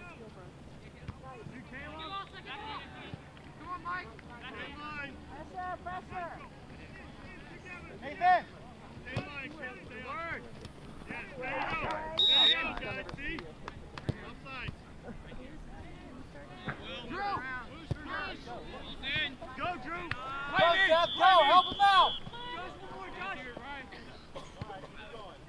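Distant shouting voices of players and spectators across a soccer field, loudest near the end. A whistle gives a short blast about halfway through and a longer blast of over a second near the end.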